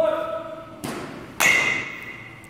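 Baseball bat striking a practice ball in a batting cage: two sharp knocks about half a second apart, the second and louder one followed by a short ringing tone.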